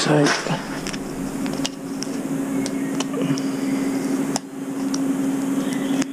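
A steady, even machine hum runs under light, scattered clicks and taps of hand work as filler is pressed into the hull recess around a transducer housing.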